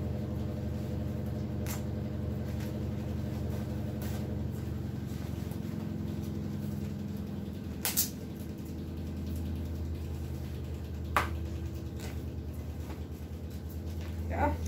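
Handling and opening a screen protector's boxed packaging: a few sharp clicks and taps, the two loudest about eight and eleven seconds in. A steady low hum runs underneath throughout.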